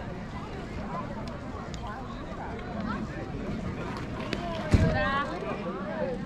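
Spectators talking and calling out at a youth baseball game, with one sharp pop about three-quarters of the way through as the pitched ball smacks into the catcher's mitt, followed at once by a shout.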